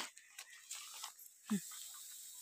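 Faint, scattered rustling of dry grass as hay bundles are handled and stacked, with one short, low vocal sound about one and a half seconds in.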